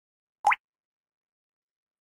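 A single short 'bloop' sound effect for an animated logo intro, about half a second in: one quick upward pitch glide lasting about a tenth of a second.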